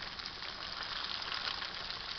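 Breaded ground-beef patties shallow-frying in hot oil in a pan: a steady sizzle with many small crackles.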